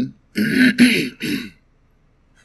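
A man clearing his throat in three short bursts within about a second.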